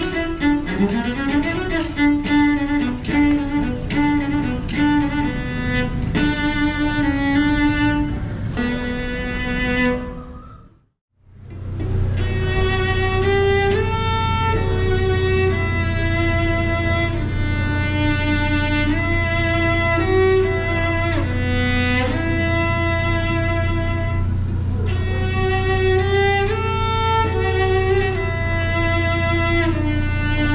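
Solo cello bowed in a melody. For the first ten seconds a jingle keeps the beat at about two strokes a second; the music cuts off abruptly near the middle, then the cello resumes over a steady low rumble.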